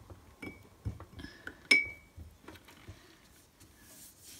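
Paintbrush clinking against a glass water jar as it is rinsed and loaded with water, a few sharp clinks that ring briefly, the loudest a little under halfway through. Faint brush sounds follow.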